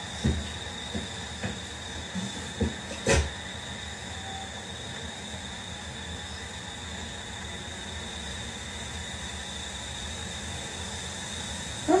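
Steady hiss of a night-vision camcorder's recording, with a thin high whine running through it. A few soft knocks fall in the first three seconds.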